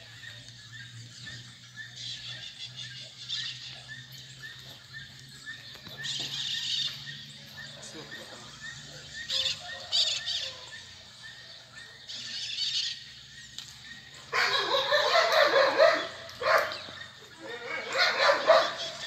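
Outdoor background: a low steady hum under distant voices and a dog barking, with a louder, busier stretch of about three seconds starting some fourteen seconds in.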